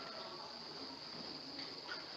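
A pause in the talk, filled by a faint, steady, high-pitched background trill or drone.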